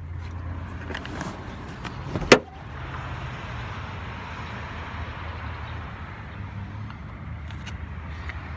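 A Chevrolet Cruze's rear seatback being folded down, landing with a single loud clack a little over two seconds in, after some rustling. A steady hiss follows.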